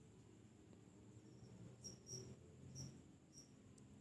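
Near silence, with a faint steady high trill and a few short, faint high chirps of a cricket in the background.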